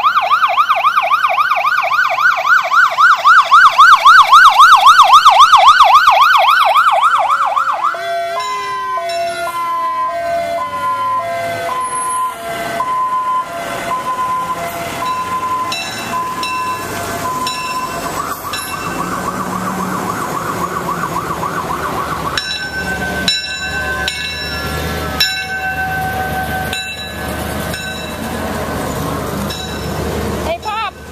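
Fire engine siren in a fast yelp, loudest about five seconds in, which cuts off about eight seconds in and falls away in pitch. After that, a slower alternating high-low siren tone follows, then steadier siren tones with sharp clicks near the end.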